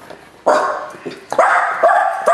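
Dog barking several times in short, sudden barks, the first about a quarter of the way in and a quicker run of barks in the second half.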